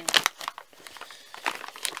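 Clear plastic bag crinkling and crackling as it is opened and handled, in irregular sharp crackles, busiest at the start and again near the end.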